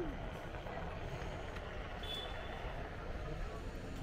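Street ambience heard from a moving board, with a steady low wind rumble on the microphone and the murmur of passers-by's voices; a brief high tone sounds about two seconds in.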